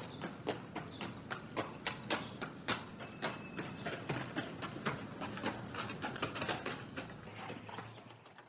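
A horse's hooves clip-clopping in an uneven run of knocks, growing fainter toward the end as the rider moves away.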